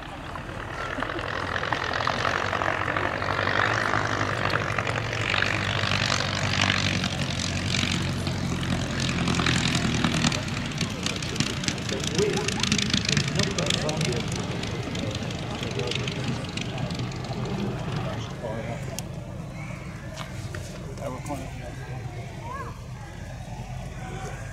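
Vintage biplane's piston engine and propeller passing by. The engine note grows louder over the first few seconds, holds, then fades away through the second half.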